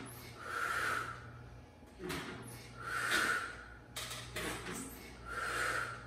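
A woman's forceful exhales, three of them about two and a half seconds apart, each a short hissing breath. These are the big exhales of Pilates chair pull-ups, one as she pulls her hips up on each repetition.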